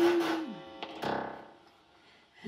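Live band music: a held sung note ends with a downward slide, then a single chord rings out and fades away to near silence.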